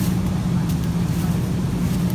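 Steady low hum of a supermarket's refrigerated display cases and ventilation, holding one even pitch throughout.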